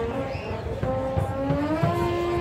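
Marching band playing: a rising glide in pitch that settles into a held note, with low drum hits under it.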